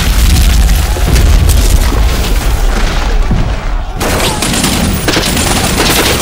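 Battle sound effects on a war-film soundtrack: deep rumbling explosion booms, then about four seconds in a sudden burst of rapid, crackling gunfire.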